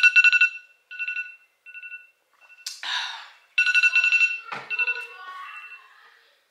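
iPhone timer alarm going off: clusters of rapid electronic beeps on two steady pitches, stopping and starting again several times, with a click partway through. It marks the end of the countdown, the cutoff for drinking water before surgery.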